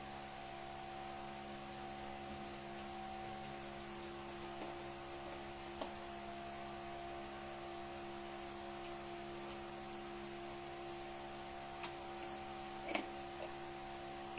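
Steady electrical or fan-like hum with an even hiss, holding the same few pitches throughout, with a few faint clicks, the loudest a little before the end.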